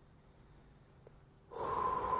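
Near silence, then near the end a man's long, audible breath sets in: a steady airy rush with a thin whistle-like tone in it, taken in rhythm with a cat-cow spinal stretch.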